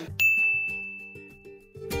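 A single bell-like ding sound effect marking a title card: it starts suddenly and rings on one high tone, fading away over about a second and a half, over faint background music.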